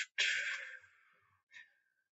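A woman's single short sigh, a breathy exhale that fades away in under a second.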